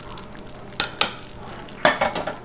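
A metal spoon stirring thick simmering chili in a stainless steel saucepan, knocking sharply against the pot three times, near the middle and near the end, over a steady low bubbling hiss.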